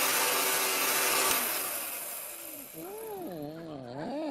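A loud rushing blast of noise that drops about a second in and fades away, then a man's voice making drawn-out, wordless sounds that glide up and down in pitch near the end.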